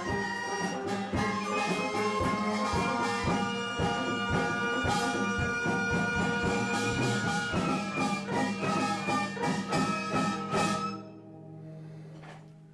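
Korean traditional (gugak) orchestra playing together, with bowed haegeum fiddles and daegeum flutes holding tones over regular drum strokes. The music stops abruptly near the end, leaving a faint low hum.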